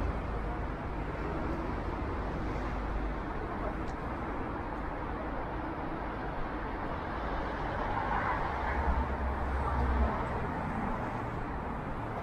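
Steady city street traffic noise from cars driving on the road alongside, with a vehicle passing louder about eight to ten seconds in.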